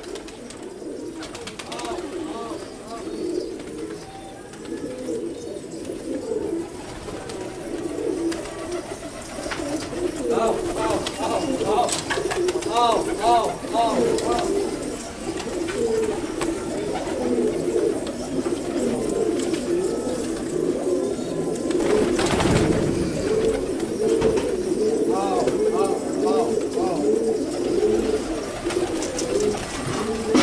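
A group of fancy domestic pigeons cooing on and on, many low coos overlapping and growing louder, with runs of quick repeated calls in the middle and near the end. A brief noisy burst comes about two-thirds of the way through.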